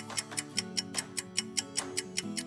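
Countdown-timer ticking sound effect, sharp even ticks about five a second, over background music.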